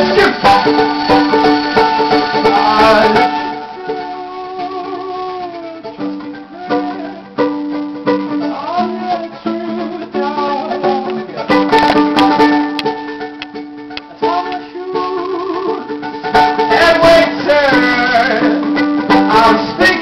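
Ukulele strummed with a man singing over it, the voice coming in phrases with gaps where the ukulele plays alone.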